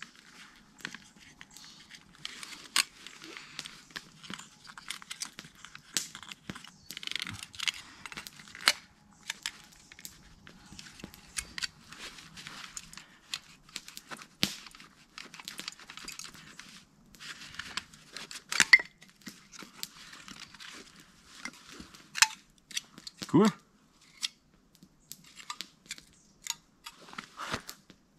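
Irregular sharp wooden clicks and cracks with scraping from fitting small wooden wedges into a split stick to spread its end into a torch head, handled in gloved hands.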